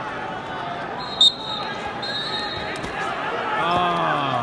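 Steady crowd murmur in a large arena, broken about a second in by one short, sharp blast of a referee's whistle starting the wrestling. Shouting rises near the end as the wrestlers tie up.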